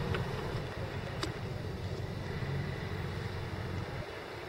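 Steady low rumble of a car running and rolling slowly, heard from inside the cabin, with a single faint click about a second in.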